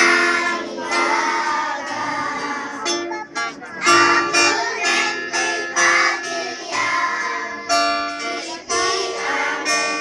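A children's choir singing together, in phrases of held notes with short breaks between lines.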